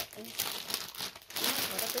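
Clear plastic clothing bag crinkling as it is handled, loudest in the second half.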